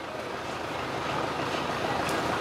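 Busy market-street ambience: a steady hum of traffic noise with faint, indistinct voices, growing slowly louder.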